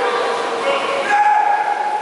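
People shouting drawn-out calls across a water polo game, echoing in a large indoor pool hall; one long call starts about a second in.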